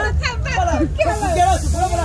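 People talking at close range over a steady low hum, with a brief high hiss in the second half.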